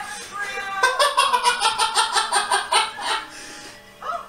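A loud, high-pitched voice from the cartoon's soundtrack, pulsing quickly and evenly about eight times a second for about two seconds, then fading.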